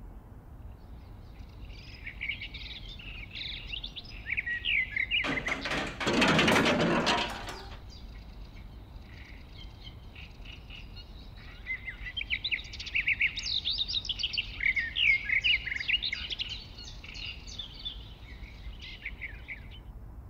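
Birds chirping and singing in many short calls, with a loud burst of noise lasting about two seconds, about five seconds in.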